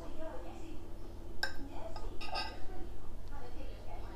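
Metal fork clinking against a ceramic plate twice, a sharp tap about a second and a half in and a ringing clink a moment later.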